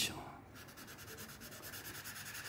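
Felt-tip marker scribbling back and forth on paper to shade in a drawing: a faint, fast, even scratching of about ten strokes a second.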